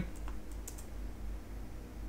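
A few faint computer keyboard key clicks over a low steady hum.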